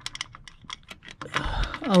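Quick, irregular light clicks of hand tools working a small Torx bolt on the engine's centrifuge (PCV) housing cover.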